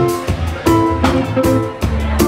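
Live band playing an instrumental stretch of a reggae-rock song: electric bass guitar holding deep notes, guitar, and drum strikes, with no vocals.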